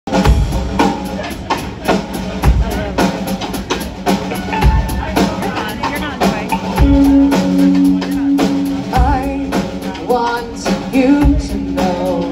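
Live rock band playing through a PA: electric guitars, bass and a drum kit with steady beats, and a woman's lead vocal coming in about nine seconds in.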